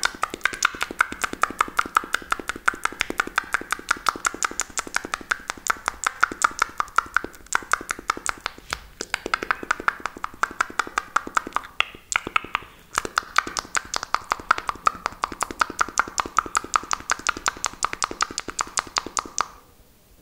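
Fast mouth clicks made into a hand cupped over the mouth, close to the microphone, several a second in a steady run. The pitch of the clicks drifts up and down, the run breaks off briefly a few times, and it stops shortly before the end.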